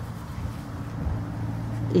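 A low, steady rumble with a hum in it, growing slightly louder over the two seconds.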